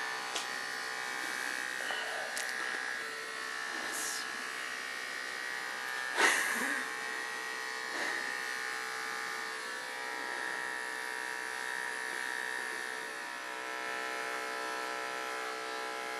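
Electric pet grooming clippers running with a steady hum while trimming the hair on a miniature schnauzer's head and ear. A brief, sharp, louder noise comes about six seconds in.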